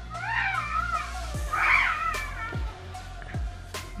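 A cat meowing twice, two wavering high cries about a second apart, over background music.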